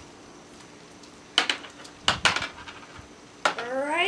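Crackling and sharp clicks from a roll of Mentos being unwrapped by hand, in a few separate bursts. A short rising voice-like sound comes near the end.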